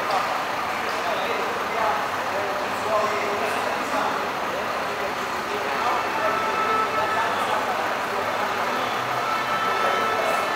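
Indistinct chatter of many voices over the steady running of an idling coach engine, echoing in a concrete garage.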